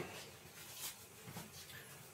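Quiet room tone with two faint, short taps, one a little under a second in and one about a second and a half in.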